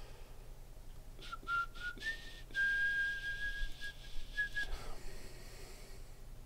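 A man whistling: a few short notes, then one long steady note held for about two seconds, with a few faint clicks near the start.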